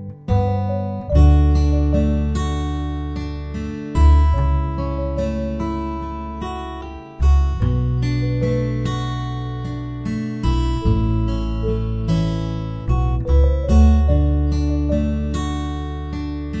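Acoustic guitar music: chords struck every one to three seconds and left to ring out, with strong low bass notes.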